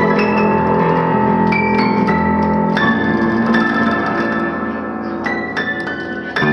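1913 Bellmann upright player piano played by hand: a sustained melody over full chords, with the harmony changing about halfway through and the playing easing off slightly near the end.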